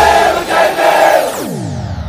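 Dance music track with a group of voices shouting together, then a long synthesized sweep falling steeply in pitch from about two-thirds of the way in.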